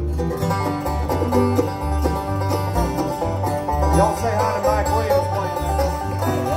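A bluegrass band of fiddle, banjo, mandolin, acoustic guitar and upright bass playing an instrumental break with no singing, the bass keeping a steady beat under the melody.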